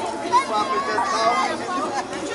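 Crowd chatter: several people talking at once, with no single clear voice.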